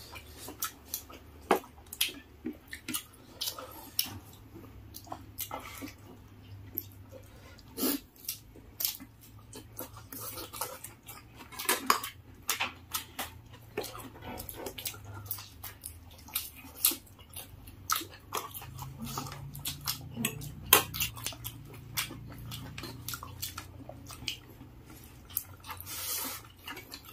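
Close eating sounds of people eating rice and curry by hand: irregular wet clicks of chewing and lip-smacking, with occasional clinks of a fork and fingers against plates.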